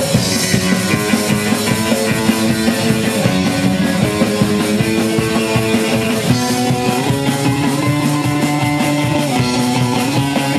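Punk band playing live: distorted electric guitar, bass and drum kit in a loud instrumental passage with no singing, the chords shifting every second or so.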